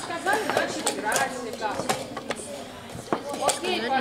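Chatter of children's voices around a chess hall, with several scattered sharp clicks of wooden chess pieces being set down and chess clock buttons being pressed; the loudest click comes about three seconds in.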